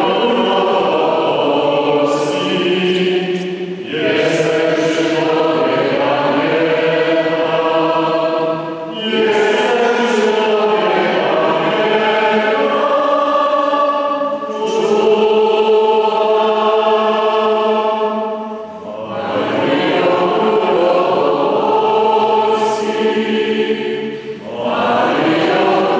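A slow hymn to the Virgin Mary sung by several voices together in long held phrases about five seconds each, with short breaks for breath between them.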